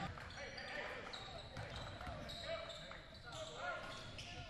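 Basketball game sounds in a gym: a ball dribbling on the hardwood floor, a few brief high squeaks, and distant voices echoing in the hall.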